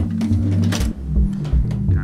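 A house music loop playing back from an Elektron Digitakt and Octatrack: a kick drum about twice a second under a steady bass line, with a bright hi-hat or cymbal hiss a little before the middle.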